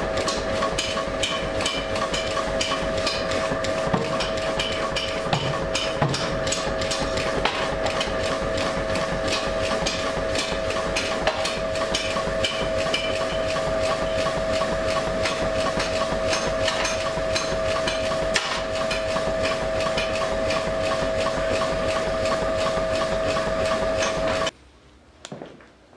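Mechanical power hammer forging hot steel, striking in a rapid, even rhythm of blows over a steady tone from the machine.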